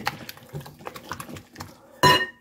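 Silicone-coated balloon whisk beating eggs and sugar in a glass mixing bowl, its wires tapping the bowl in quick, irregular clicks.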